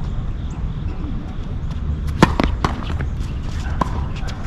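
Tennis ball bouncing on a hard court before a serve: a few sharp knocks about two seconds in and one more near the end, over a low outdoor rumble.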